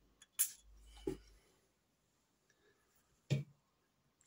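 One quick spritz from a perfume bottle's long-necked atomizer pump, a short hiss about half a second in. A fainter short sound follows a moment later, and a brief knock comes near the end.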